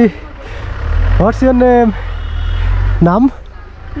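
Short stretches of speech, one about a second in and a brief question near the end, over a steady low rumble.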